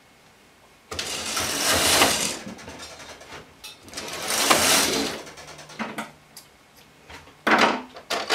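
Silver Reed SK840 knitting machine carriage pushed across the needle bed twice, each pass a rattling whirr of about a second and a half as it knits a row. A shorter clatter follows near the end.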